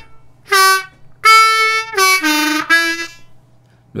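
A 10-hole diatonic harmonica in D plays a descending blues phrase on draw holes 2 and 1, five notes in all. It opens with a whole-step bent 2 draw, then a longer plain 2 draw and the bend again. It ends with a bent 1 draw and a plain 1 draw, lower in pitch, in the second half.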